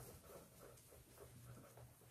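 Faint rubbing of a cloth eraser wiping a whiteboard in quick back-and-forth strokes, over a low steady hum.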